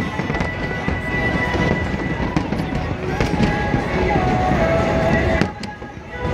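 Fireworks crackling and popping, with music playing underneath. The sound drops away briefly near the end.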